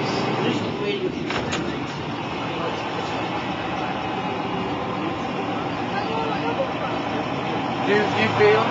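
DAF SB220 single-deck bus's diesel engine running steadily, heard from inside the passenger saloon, with a couple of brief rattles about a second and a half in.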